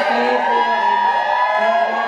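A crowd cheering and whooping, with a long drawn-out 'woo' held through the whole moment.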